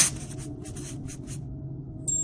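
A quick run of short scratchy strokes that fade out about a second and a half in, over a faint low steady hum.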